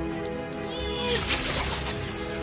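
Battle-scene soundtrack of a TV drama: held orchestral music, with a short high animal cry about a second in, then a rush of noisy battle sound.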